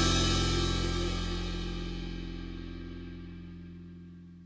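Last chord of a blues-rock song ringing out: a held electric guitar chord and a cymbal wash dying away together, steadily fading.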